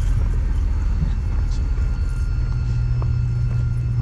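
A vehicle engine idling: a steady low hum with a few faint high whines over it.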